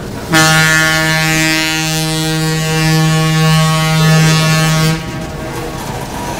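Locomotive air horn of an EMD SW8 switcher, one long steady blast on a single low note lasting nearly five seconds, over the rumble of freight cars rolling past.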